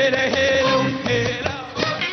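Live Sudanese band music with trumpet, saxophone and violins, a melody of long held notes over a steady beat, briefly dipping in loudness near the end.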